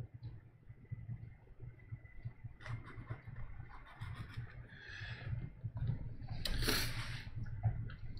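Faint brush dabs on a stretched canvas over a low steady room hum, with a louder breathy exhale about six and a half seconds in.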